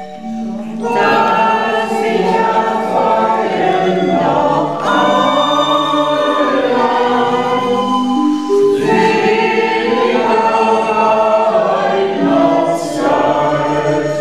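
A group of older men and women singing a Christmas song together from song booklets, in long held phrases with short breaks between them.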